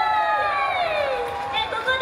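A young woman's high voice through the PA, holding one long note that slides down in pitch, then shorter calls, with a crowd behind.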